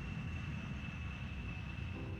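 B-52 Stratofortress jet engines running: a steady low rumble with a thin, steady high whine above it.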